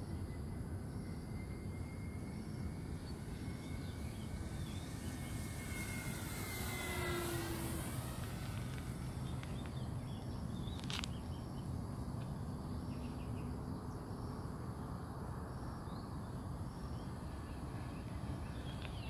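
Electric motor and propeller of a radio-controlled Flightline La-7 model warbird in flight: a steady whine that swells and drops in pitch as the plane passes close, about seven seconds in. A single sharp click comes about eleven seconds in.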